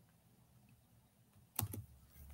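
Near silence, then a quick couple of clicks on a computer keyboard about one and a half seconds in.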